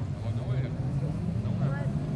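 Autocross cars' engines running at a distance, a steady low drone, with a few words from nearby voices over it.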